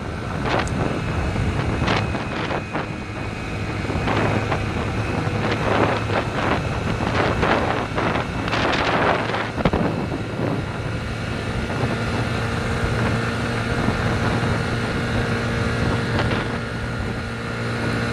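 A Yamaha motorcycle's engine running at a steady cruise, with wind buffeting on the microphone. The wind comes in gusts, heaviest in the first half, and eases toward the end.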